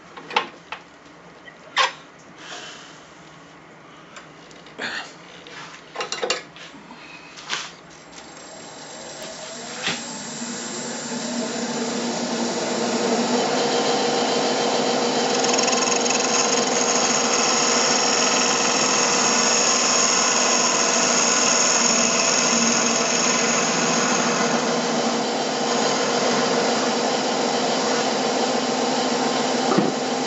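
Turning gouge cutting across the end grain of a cherry blank spinning on a wood lathe. A few sharp ticks of the tool touching the wood come over the first several seconds; then the cut builds over a few seconds into a steady, loud shearing noise with a hum.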